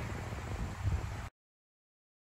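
Outdoor background noise with a low rumble, then the sound cuts off suddenly to dead silence about a second and a quarter in.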